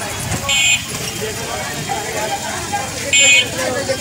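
A vehicle horn gives two short, high-pitched toots about two and a half seconds apart, over the chatter of a busy street market.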